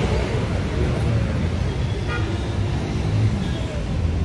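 City road traffic noise: a steady low rumble of vehicle engines, heard from a motorcycle riding in the traffic.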